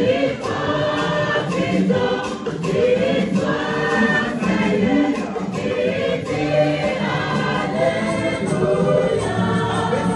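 Choir of women singing a gospel hymn in Ewe together, several voices amplified through microphones.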